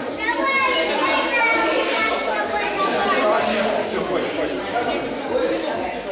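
Indistinct chatter of many overlapping voices, children's among them, in a large hall.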